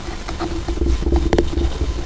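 Hands handling a sellotaped cardboard tube: light taps and scrapes of fingers on the cardboard, with one sharper click just past the middle. A steady low hum and rumble run underneath.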